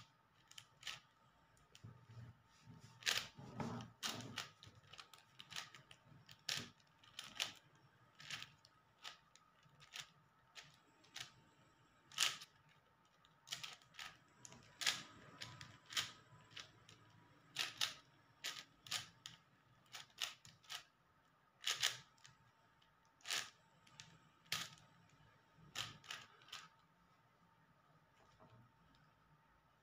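Plastic 4x4 speed cube turned fast by hand: irregular sharp clicks as the layers turn and snap into line, sometimes several in quick succession.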